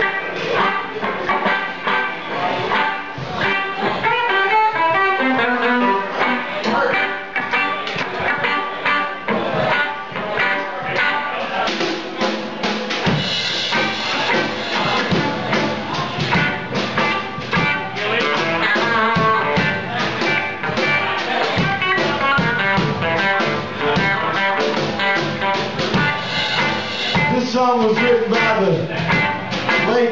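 A small band playing live on electric guitars and a Gretsch drum kit, with a steady drum beat under the guitar lines.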